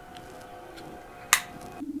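Faint steady electronic tones, with one sharp click about a second and a half in and a low pulsing tone starting near the end.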